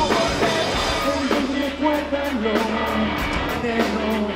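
A live rock band playing: electric guitar and drum kit with regular cymbal strokes, under a male lead voice singing the melody.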